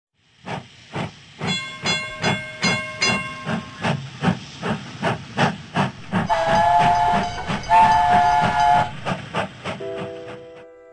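Steam locomotive sound effect: the engine chuffs at a steady beat of about two a second, and its whistle gives two long blasts past the middle.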